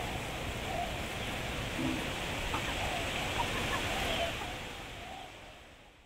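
Steady rushing outdoor noise with a few faint, short clucks from free-ranging chickens, the whole fading out near the end.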